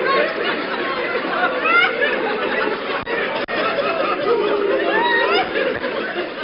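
Audience laughing and chattering at a live comedy show, many voices overlapping, with two brief dropouts in the sound near the middle.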